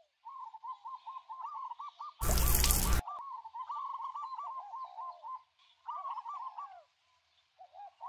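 A bird singing in quick runs of short, repeated arched notes, pausing between phrases. About two seconds in, a loud burst of noise cuts across it for just under a second.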